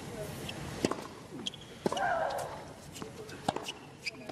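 Tennis ball struck by rackets in a serve and rally on a hard court: sharp hits about a second or more apart, with a player's grunt on a shot about two seconds in, over crowd murmur.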